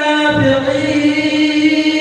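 A man reciting the Quran in melodic tajweed style into a microphone, drawing out one long held note that dips slightly about half a second in.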